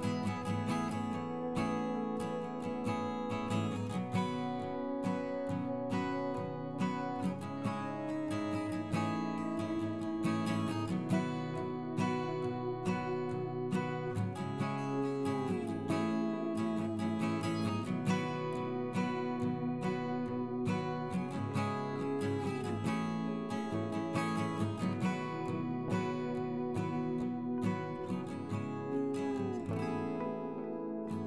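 Background instrumental music led by acoustic guitar, a steady run of plucked notes.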